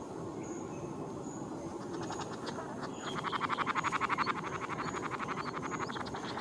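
Male flame bowerbird's display sound during its courtship dance: a rapid rattling train of about a dozen clicks a second. It sounds strange, almost robotic, and starts about two seconds in, growing loudest in the middle.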